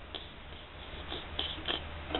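A few faint small ticks as a cracked Fostoria "American" pressed-glass cup is moved slightly in the fingers: the hairline crack making a sound that is very faint and very hard to hear. Low steady hum underneath.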